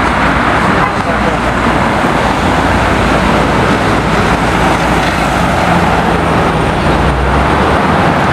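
Road traffic passing close by: a steady, loud noise of tyres and engines, with a deeper engine hum growing stronger in the last few seconds.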